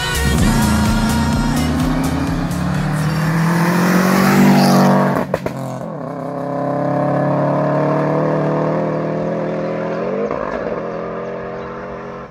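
Rally car engine pulling hard, its revs climbing steadily, with a sudden break about halfway through before it picks up again and rises once more near the end. The beat of a pop song fades out in the first second or so.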